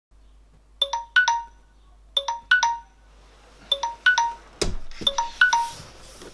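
Smartphone ringtone: a short three-note chime phrase repeats four times, about every one and a half seconds. A single thump comes about two-thirds of the way through.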